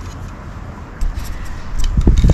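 Handling noise from a carbon-fibre hydrofoil wing being moved in the hands: a low rumble, a click about halfway through and heavier knocks near the end.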